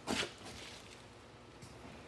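A brief scuffing rustle of handling noise right at the start, then quiet room tone.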